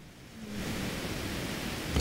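A steady, even hiss with no tone in it, fading in about half a second in after a brief near-silent gap.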